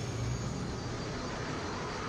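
A steady low rumbling sound effect from the anime episode's soundtrack, with no speech or music over it.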